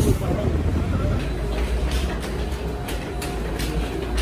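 Urban ambience: a steady low traffic rumble with people's voices in the background, and from about a second in a run of sharp clicks, a few per second.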